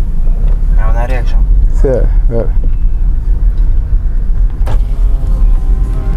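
A car's low, steady road and cabin rumble, heard from inside the moving car. A sharp click comes near the end.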